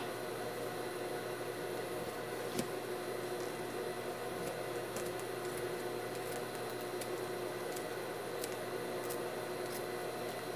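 Steady low room hum, with a few faint, scattered snips of scissors cutting knit fabric along a paper pattern.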